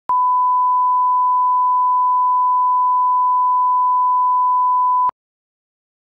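Broadcast line-up reference tone at 1 kHz: a single steady pure tone that cuts off suddenly about five seconds in.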